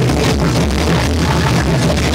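Loud breakcore played live from a laptop set: dense electronic music with heavy bass and rapid, closely packed drum hits.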